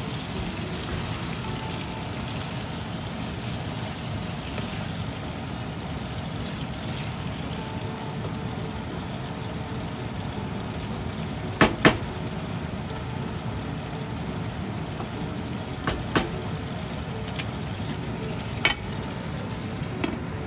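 Taro and masala curry simmering in a nonstick pan, a steady sizzle and bubble. A few sharp knocks sound over it, two close together a little past halfway, then two more and a last one near the end.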